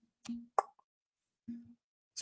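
A man's faint hesitation hums, two short voiced 'mm' sounds, with a sharp lip smack between them in a pause while he thinks.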